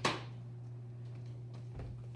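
A sharp plastic click as a food processor's lid and feed tube are handled and set in place, followed by a low steady hum and a soft knock near the end.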